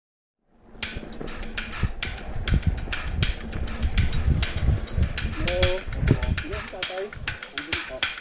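Mountain bike rolling over a bumpy dirt trail: a low rumble with rapid, irregular clicks and knocks from the bike rattling on the rough ground. Short voices call out in the second half.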